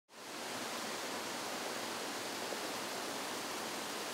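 Steady rushing and splashing of water from a spa pool's hydromassage jets and cascade spout, fading in at the start.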